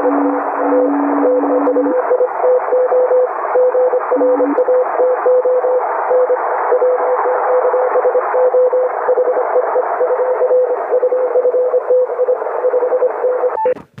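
Morse code (CW) received on an HF amateur transceiver: a keyed tone sending a steady run of dots and dashes over loud, constant band hiss. A second, lower-pitched Morse signal keys alongside it for the first two seconds and again briefly about four seconds in.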